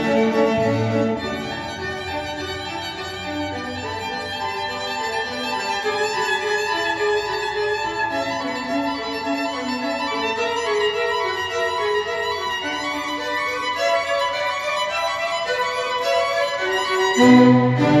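Recorded music of bowed strings, a violin melody over lower strings, played through Sonus Faber Aida floorstanding loudspeakers and picked up in the room. Louder, lower string notes come in near the end.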